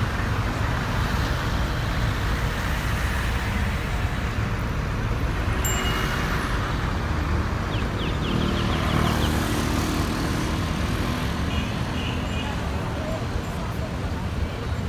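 Road traffic on a busy city street: a steady rumble of passing cars and other vehicles, with one vehicle's engine standing out about eight to ten seconds in.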